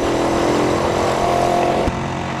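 Small single-cylinder Honda CG motorcycle running at a steady cruising speed, heard from the rider's seat under a steady rush of wind and road noise, with heavy trucks alongside.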